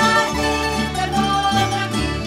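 A Valencian folk fandango played by a band of plucked strings: guitars, bandurria-type lutes and a double bass, in a lively strummed and plucked rhythm.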